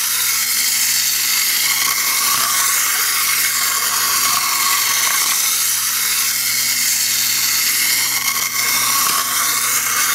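Clockwork wind-up motor of a tiny toy Ecto-1 car whirring as the car runs along the tracks of a board-book map. It makes a steady, high buzzing whine that wavers slightly in pitch.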